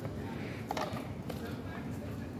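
Indistinct voices of people on the street over a steady low rumble, with a couple of sharp clicks in the middle.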